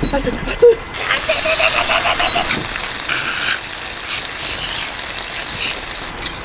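Beef frying in a heavily oiled pan, with a steady loud sizzle and hot oil spitting, plus a sharp pop about half a second in. A man's startled cries come over it as the oil spatters: too much oil in the pan.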